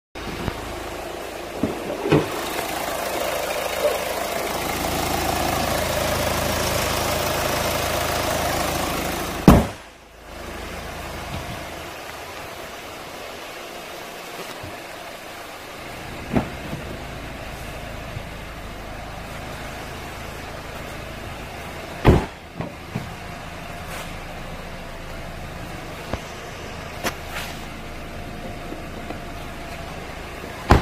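Hyundai Tucson idling steadily, louder for the first ten seconds, with sharp knocks breaking in: a very loud one about ten seconds in and others later.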